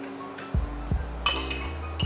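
Background music with a steady beat; a little past a second in, a metal spoon clinks a few times against the cup as tapioca pearls are dropped in.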